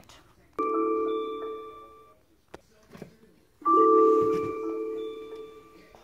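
Two electronic chime tones from the desk lamp's built-in speaker, each starting suddenly and fading away over a second or two, the second a few seconds after the first.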